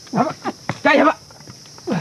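Three or four short animal calls in quick succession.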